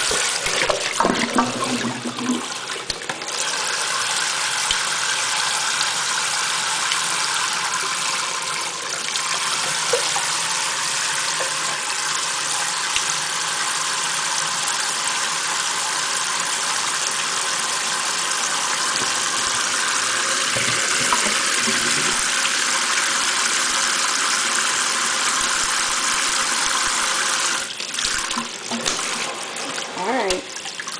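Kitchen faucet running steadily, its stream falling on an African grey parrot and splashing into a stainless steel sink. Uneven splashing in the first few seconds and again near the end.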